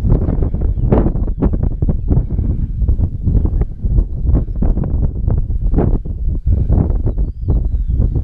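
Wind buffeting the microphone on open moorland: a loud, gusty low rumble broken by irregular thumps and rustles several times a second.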